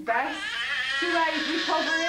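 Several young children squealing and shouting together in high, excited voices, without clear words.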